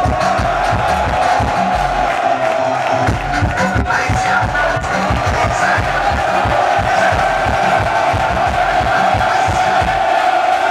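A large crowd cheering and shouting together, loud and sustained, with music still playing underneath.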